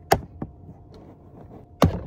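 Plastic trim clips under a Tesla Model Y's glove box being worked loose with a plastic pry tool. Sharp clicks: a loud one at the start, a smaller one about half a second in, and another loud one near the end.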